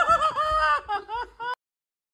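High-pitched laughter: a quick run of short giggling "ha" syllables that cuts off abruptly about one and a half seconds in, followed by silence.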